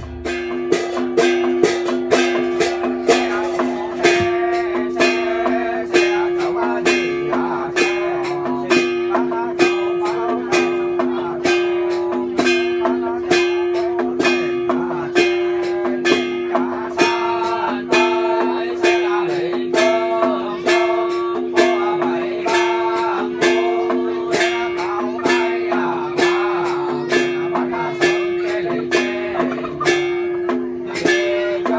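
Plucked-string ritual music over a steady held drone note, with sharp strikes keeping an even beat of about two to three a second.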